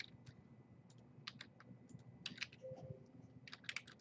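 Faint typing on a computer keyboard: about four short runs of quick keystrokes with pauses between them.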